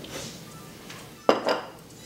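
A metal spoon clinking against a ceramic bowl: two sharp clinks close together, about a second and a half in.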